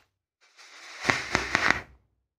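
A drag on an electronic cigarette: air hissing through the atomizer while the heated coil crackles and pops with e-liquid, a few sharp pops in the second half of the draw.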